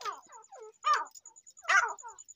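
Caged francolins (teetar) giving a string of short calls, four or five notes each falling in pitch, the loudest about a second in and again near the end.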